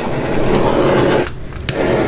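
Small handheld torch flame hissing as it is passed over wet epoxy resin to pop surface bubbles: a steady rushing hiss that cuts out briefly after about a second and starts again.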